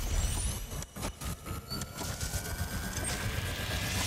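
Electronic sound design for an animated logo sting: rapid glitchy digital clicks and crackles over a noisy bed, with high sweeps and a thin tone rising slowly as it builds toward the logo reveal.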